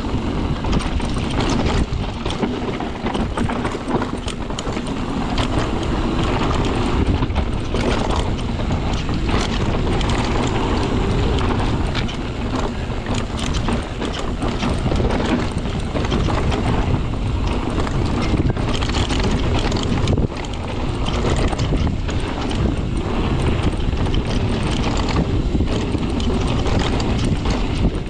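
Mountain bike riding fast down a dry dirt singletrack: a continuous rush of tyre and wind noise, with constant clattering and knocks from the bike as it runs over bumps and roots.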